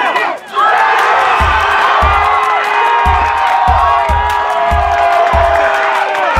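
Music with a heavy, thumping bass beat, starting about half a second in after a brief drop in sound, over a crowd cheering.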